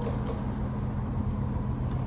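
Steady low mechanical rumble with a few held low hum tones, the kind of sound made by vehicle engines or traffic.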